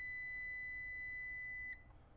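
EG4 6000EX-48HV inverter's panel buzzer sounding one long, steady high beep while its enter button is held down to open the settings menu. The beep cuts off near the end as the menu opens.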